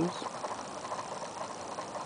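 Low, steady outdoor background noise with no engine running, just after a voice trails off at the start.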